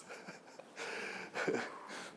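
A person breathing out through the mouth, a breathy rush of air lasting about half a second: the release of a deep breath held until pressure built, in a breathing exercise.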